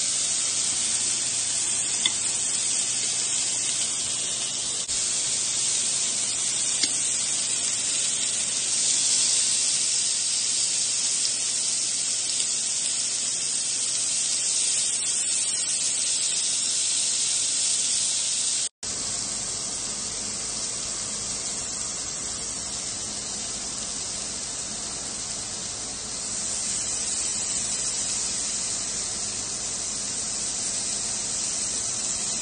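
Marinated beef and chicken skewers sizzling on an electric tabletop grill, a steady hiss with a couple of light clicks from metal tongs. About two-thirds of the way through it breaks off for an instant and resumes a little quieter.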